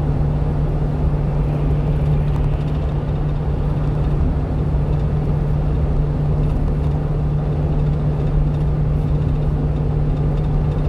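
Steady engine hum and road rumble inside the cab of a 1-ton truck cruising at highway speed.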